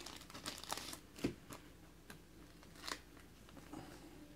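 Faint crinkling and soft ticks of a thin plastic card sleeve being handled as a trading card is slid into it, with a soft tap about a second in.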